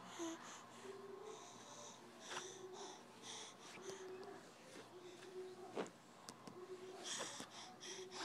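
A baby's faint, short, breathy vocal sounds, each a brief hum with an airy hiss, coming about once a second, with a few soft knocks in between.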